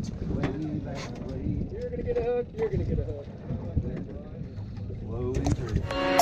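Indistinct voices talking over a steady low rumble of wind and water noise aboard a boat at sea.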